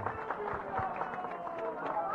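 Crowd murmur: several voices talking in the background, fainter than the close speech around it.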